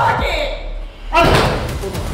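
A hand slapped hard against a closed wooden door, one loud thud about a second in.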